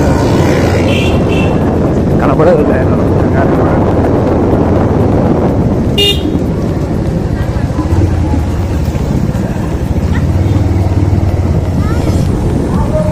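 Motorcycle riding at low speed, its engine running steadily with road noise. A vehicle horn gives one short toot about six seconds in.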